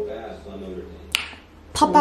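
A single sharp finger snap about a second in, between a woman's trailing words and her next phrase.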